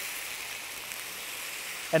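White wine sizzling steadily as it hits a hot Le Creuset enameled cast iron skillet of seared pork chops, deglazing the pan.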